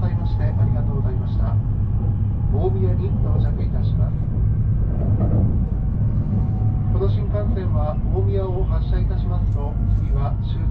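Steady low rumble of an E7 series Shinkansen running, heard from inside the cabin. Indistinct voices come over it for the first few seconds and again near the end.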